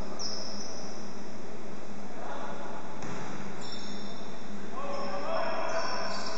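Sounds of an indoor basketball game on a hardwood court: players' voices calling out over a steady hall background, with a basketball bouncing. A louder call comes about five seconds in.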